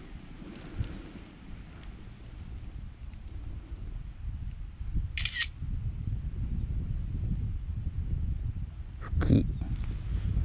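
Smartphone camera shutter sound, once, about five seconds in, as a photo is taken for plant identification, over a low steady rumble on the microphone. There is a brief rustle near the end.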